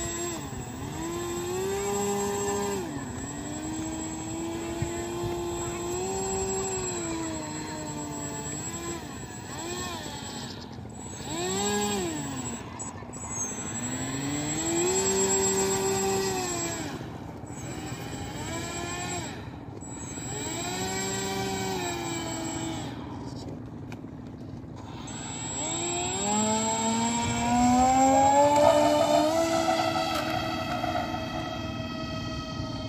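Electric motor of an RC model airliner whining as the throttle is opened and closed while it taxis on the ground, the pitch rising and falling in swells of a second or two. Near the end the whine climbs higher and louder as the throttle is pushed up.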